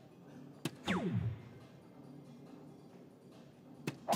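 Soft-tip dart hitting a DARTSLIVE electronic dartboard: a sharp click about two-thirds of a second in, followed at once by the machine's falling electronic hit tone as it scores a single. Another dart clicks into the board just before the end, over a faint steady background.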